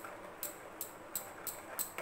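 A steel spoon clinks against the side of a small stainless-steel bowl while stirring a liquid mixture, a sharp ringing clink about three times a second.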